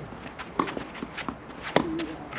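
Tennis players' quick footsteps and shuffling on the court during a rally, a run of short sharp steps, with one louder sharp hit near the end like a racket striking the ball.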